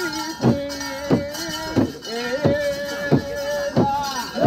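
Japanese festival music: a drum struck at a steady beat, about one and a half strokes a second, under a held melodic line that steps and slides in pitch.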